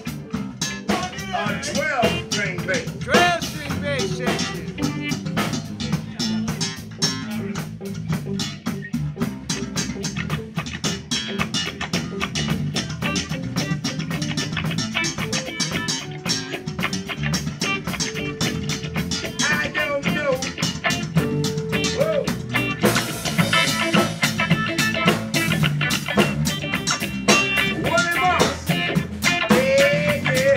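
Live funk band playing: drum kit keeping a steady beat and electric bass under a lead line on an electric string instrument, its notes bending and sliding, with one note held for a few seconds past the middle.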